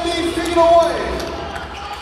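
A basketball bouncing on a hardwood court during play, mixed with voices in a large arena hall.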